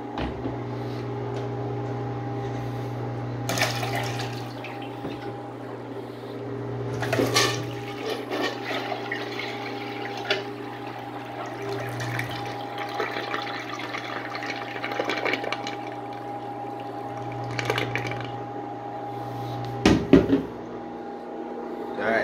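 A miniature model of a 1970s Briggs Abingdon toilet flushing: water running from its tank and swirling down the bowl until it drains away. A few sudden louder sounds break through the running water, the loudest near the end.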